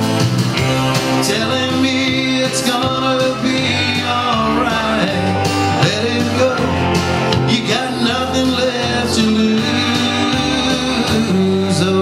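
Live country song: a man singing and playing electric guitar over a steady bass line and drums.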